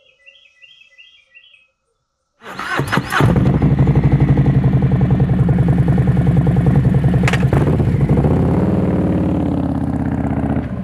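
A touring motorcycle's engine starts about two and a half seconds in, catching after a brief crank. It then idles loud and lumpy through its dual exhaust, and revs up as the bike pulls away near the end.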